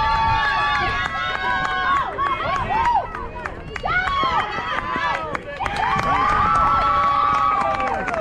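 Several high-pitched voices of softball players yelling and chanting cheers. Long drawn-out calls come at the start and again a little past the middle, with shorter shouts between them.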